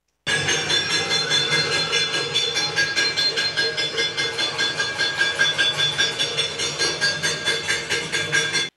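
Cacerolazo: people banging metal pots and pans in a fast, steady rhythm of about four or five ringing bangs a second, a street protest.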